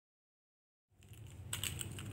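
Silence for about the first second. Then a low hum comes in, with light, quick clicking of small plastic beads knocking together as they are handled and threaded onto a cord.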